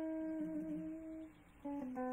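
Electric guitar holding a single long note that fades out about a second and a half in, then starting a new phrase of short, quickly changing notes near the end.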